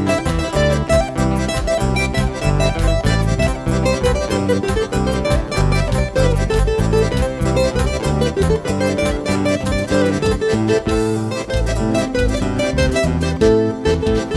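Huayno band playing an instrumental introduction: a lead acoustic guitar plays runs of plucked notes over keyboard and electric bass, to a steady dance rhythm.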